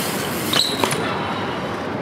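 BMX bike's tyres rolling on a concrete parking-deck floor during a wall-ride attempt, a steady rolling noise. Just over half a second in comes a short high squeal and a few knocks as the bike meets the wall.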